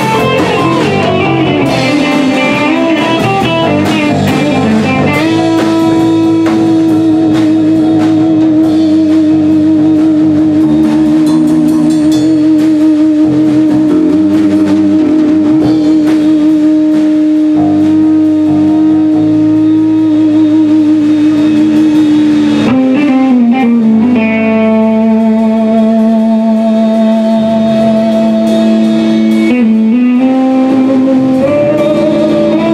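Live rock band playing with no singing: an electric guitar holds a long sustained note with vibrato for most of the passage, bends into a lower note near the end and holds that, over bass guitar and drum kit.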